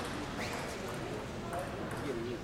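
Table tennis ball knocking off the players' bats and the table during a rally: a few sharp, spaced clicks over faint voices in the hall.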